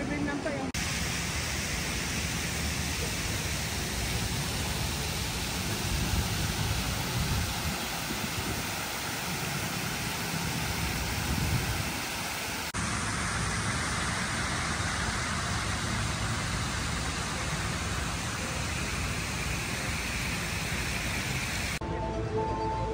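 Steady rushing splash of a fountain's water jets into its pool, a hiss spread evenly from low to high. About halfway through it breaks off abruptly into a similar steady rush with a little more hiss.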